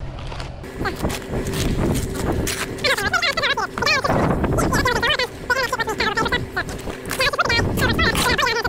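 People talking, with a continuous hiss and a faint steady hum behind the voices.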